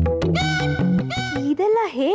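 A run of meow-like calls, about four, each rising and falling in pitch, over background music.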